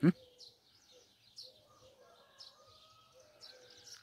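Faint birds chirping in short, scattered calls over quiet outdoor background.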